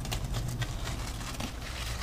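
Rustling and small crackles of large marrow leaves and stems being pushed aside and cut through with a knife, over a steady low rumble.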